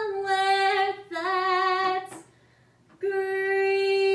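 A young woman singing solo and unaccompanied: two short sung notes, a brief pause with a breath, then a long held note beginning about three seconds in.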